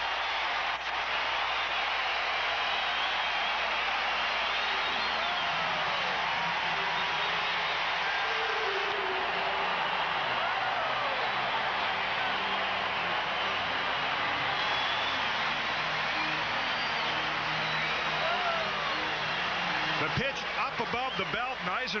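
Large stadium crowd cheering in a steady, unbroken ovation for a home run; many voices blend into one continuous roar.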